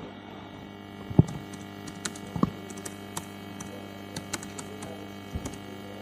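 Scattered keystrokes on a computer keyboard as a short terminal command is typed, over a steady electrical mains hum; the sharpest click comes about a second in.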